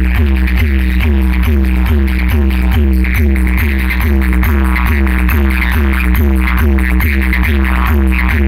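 Loud EDM dance track played through a DJ roadshow's bass-heavy sound system: a deep, sustained bass under a synth figure that repeats about three times a second.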